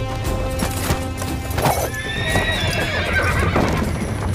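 A horse neighing, one long wavering call starting about two seconds in, over dramatic background music.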